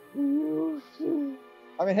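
A person's voice making a held, hooting 'hoo'-like vocal sound lasting about half a second, followed by a second, shorter one just after the first second.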